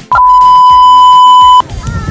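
A single loud, steady, high-pitched beep that starts and cuts off abruptly, lasting about a second and a half: an edited-in censor bleep laid over the soundtrack.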